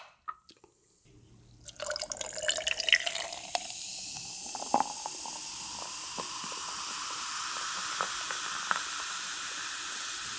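Fanta orange soda poured from a can into a glass mason jar over ice. The pour starts about two seconds in, splashing, with a tone that rises for a couple of seconds. It then settles into a steady fizzing hiss with occasional small clicks.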